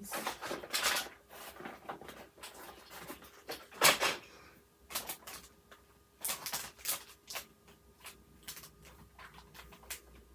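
A torn plastic bag of diamond-painting drill packets being handled. It crinkles and rustles in irregular bursts, loudest about four seconds in.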